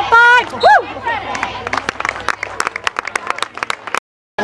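Spectators on the sideline: a high-pitched yell at the start, then rapid hand clapping, several claps a second, for about three seconds.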